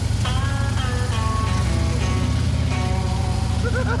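Background music, a short melody of held notes stepping up and down in pitch, over the steady low rumble of two police motorcycles moving off slowly: a BMW RT boxer twin and a Harley-Davidson Road King V-twin. A laugh comes near the end.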